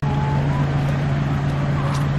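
A motor vehicle's engine running at a steady idle close by: an even low hum that begins abruptly at the start, with faint voices of people walking past.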